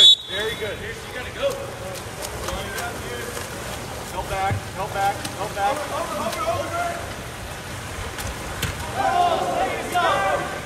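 A short referee's whistle blast, the loudest sound, right at the start, then spectators shouting and calling out around the pool, louder again near the end.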